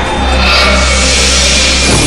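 Dramatic background music with a deep, steady rumble that sets in right at the start and a swelling hiss in the first second, a cartoon action sound effect.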